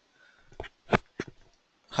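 Three short clicks about a third of a second apart, heard over an online call connection.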